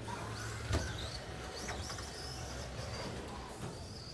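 Electric RC short-course racing trucks running on the track, their motors whining and rising and falling in pitch as they speed up and slow down. A single sharp knock comes about three-quarters of a second in, over a steady low hum.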